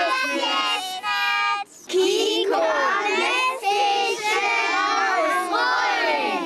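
A group of young kindergarten children shouting a team cheer together, with one long held call about a second in. After a brief break, another group of children starts its own loud cheer in unison.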